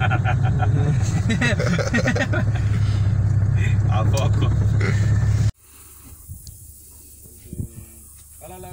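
Low steady drone of a vehicle's engine and tyres on a dirt road, heard from inside the cab. It cuts off abruptly about five and a half seconds in, leaving quiet outdoor ambience.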